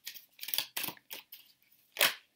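Oracle cards being handled and drawn from the deck: a handful of short, papery flicks and taps at uneven intervals, the loudest about half a second in.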